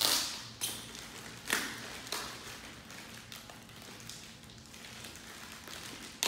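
Clear plastic packaging bag crinkling as it is pulled open by hand, with several sharp rustles in the first two seconds, then quieter handling.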